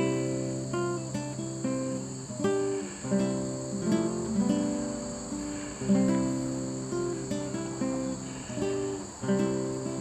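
Acoustic guitar music: picked notes and chords, each one struck and left to ring and fade, a fresh pluck about every second.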